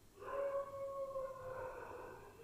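A long animal howl that starts just after the beginning, holds one pitch while sinking slightly, and fades toward the end.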